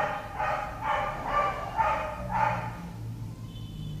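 A dog barking over and over, about two barks a second, stopping about three seconds in.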